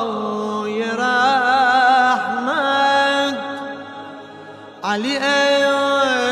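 A male singer performing a slow, ornamented Shia devotional chant with long held notes and vibrato. The voice dips quiet a little past three seconds in and comes back with a rising slide near the end.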